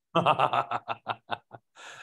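A person laughing in a run of short bursts that fade out over about a second and a half, followed by a breath in.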